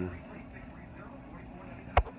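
A pause in speech filled by a low, steady background hum, with one sharp click near the end just before talking resumes.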